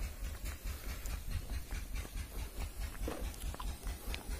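Uneven low rumble of wind and handling on a handheld phone microphone carried through the open air, pulsing several times a second, with a few faint short sounds in the background.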